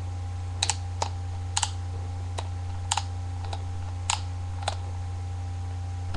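Snowboard binding ratchet buckle clicking as the strap is ratcheted through it: about ten sharp plastic clicks, some single and some in quick pairs, roughly every half second, over a steady low electrical hum.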